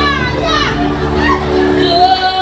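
A woman's held sung note slides down, then her voice calls out short spoken or shouted phrases over the continuing calypso backing music.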